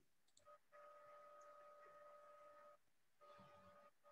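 Near silence: room tone with a faint steady hum that drops out for about half a second near the end, then returns.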